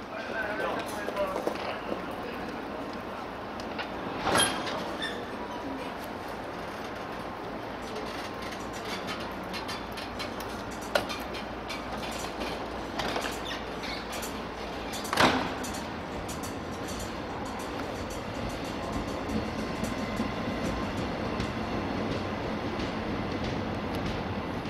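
Korail Mugunghwa-ho passenger train pulling out of the platform: a steady rumble with a few sharp clanks, the loudest about 4 and 15 seconds in. The rolling rumble builds a little over the last few seconds as the coaches move off.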